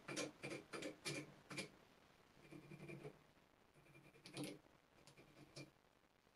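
Faint scratchy handling sounds of fly tying at the vise as a dubbing-and-hackle collar is worked onto a tube fly: a quick run of light strokes, about three or four a second, in the first second and a half, then a few scattered soft ones.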